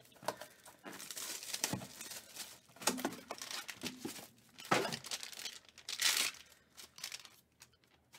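Clear plastic shrink wrap being torn off a trading card box and crinkled in the hands, in irregular bursts of rustling that die away near the end.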